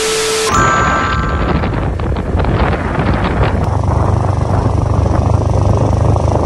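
A TV-static glitch transition effect: half a second of hiss with a steady beep, then brief higher beeps. It gives way to a steady low rumble of wind and vehicle noise from riding along a road.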